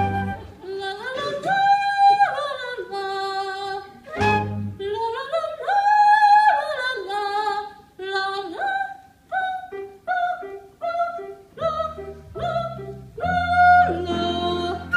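A high, operatic singing voice with vibrato and a yodel-like style, over a theatre pit orchestra. The voice holds long notes and leaps between pitches. From about eight seconds it sings short, detached notes. Low accompaniment notes sound about four seconds in and again near the end.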